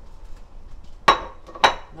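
Pot lid with a steel rim clinking twice against the rim of a metal cooking pot, two sharp ringing clinks about half a second apart.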